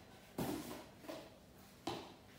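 Two sharp knocks of kitchen things being handled, about a second and a half apart, with a fainter tap between them, as salt is fetched for the food.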